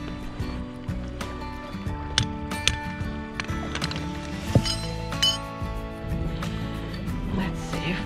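Background music, with a few sharp metallic clinks from a hammer striking metal between about two and five seconds in.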